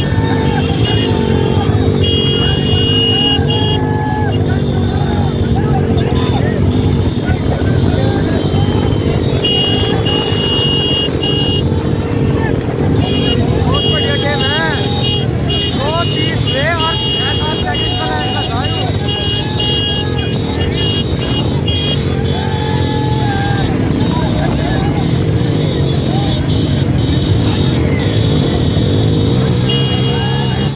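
Motorcycle engine running steadily at speed close by, with people shouting over it at intervals.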